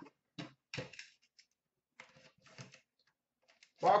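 Scattered light taps and clicks of hands handling trading cards and a cardboard card box on a glass counter, in a few short clusters with pauses between.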